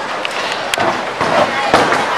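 Busy bowling-alley din: background crowd chatter over a steady clatter, with a sharp click about three-quarters of a second in and another near the end.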